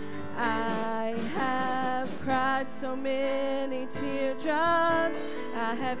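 A worship song: women's voices singing long held notes with vibrato into microphones, over instrumental accompaniment.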